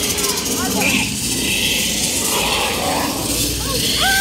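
Indistinct voices over a loud, steady rushing noise aboard a water-ride boat moving through the ride building.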